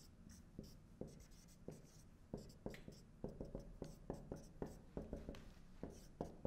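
Marker writing on a whiteboard: a faint, irregular run of short strokes and taps as letters and dots are written.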